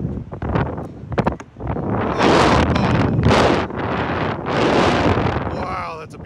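Air rushing over the ride's onboard microphone as the slingshot capsule swings and tumbles through the air, in two long loud surges.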